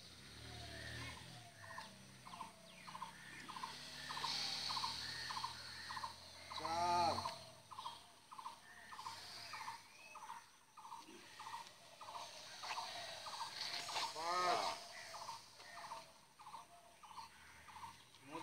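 A bird repeating a short note about twice a second, with two louder, longer calls about seven and fourteen seconds in.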